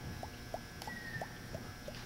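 A run of short, faint squeaks, each one rising in pitch, coming a few times a second at uneven spacing, with a brief falling high whistle about a second in.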